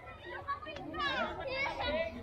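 Children and other people playing and calling out in the distance, several high voices overlapping at once.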